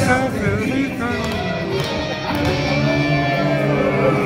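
Live rock band playing a short passage in a concert hall, with a man singing through the PA over held instrument notes.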